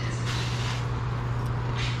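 A steady low hum, like a motor running, with a faint hiss over it.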